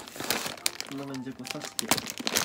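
Plastic bag of akadama soil crinkling and crackling as it is gripped and pulled open by hand. A short voiced hum breaks in about a second in.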